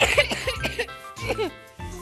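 A child coughing, a run of short coughs in quick succession, with music playing underneath.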